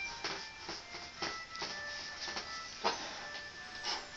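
Short chalk strokes scratching on paper on an easel, coming irregularly about twice a second as colour is shaded in, over soft background music.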